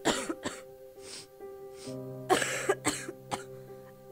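A person coughing repeatedly, about eight short coughs in irregular clusters with the heaviest bunch a little past halfway, over soft sustained background music. The coughing stands for a child who is sick.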